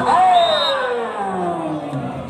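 A long, drawn-out vocal "ohh" that slides steadily down in pitch over about two seconds and fades, an exclamation as a volleyball rally ends on a spike.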